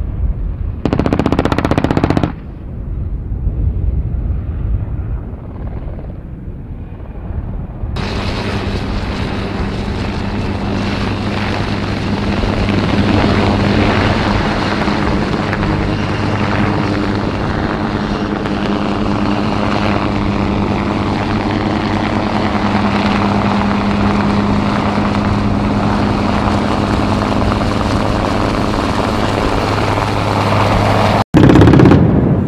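A loud burst of noise for about the first two seconds, then a quieter, muffled stretch. From about 8 seconds in comes the steady hum of a UH-1Y Venom helicopter in flight: its twin GE T700 turboshaft engines and rotor blades, with a low steady drone.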